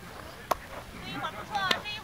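Players' voices calling across an open soccer field, with two sharp knocks, one about half a second in and one near the end.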